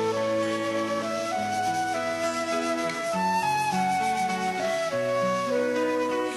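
Transverse flute playing an instrumental melody of held notes that step from pitch to pitch, over lower sustained accompaniment notes.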